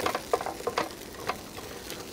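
Onions frying in a pan, with irregular clicks and scrapes of a spatula stirring them over a steady sizzle.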